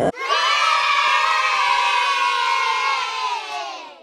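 A group of children cheering and shouting together in one long, held cheer that fades out near the end.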